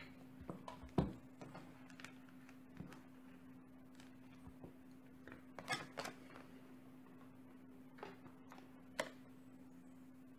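Scattered light clicks and knocks of a multimeter's test leads and a small rotary switch being handled on a tabletop: the strongest about a second in, a few together near six seconds, and single ones near the end, over a faint steady hum.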